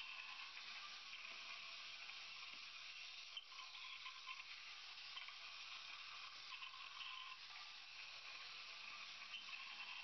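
Faint steady hiss with a faint whine that comes and goes several times, from the robot's two small DC gear motors as it drives forward, backs up and turns.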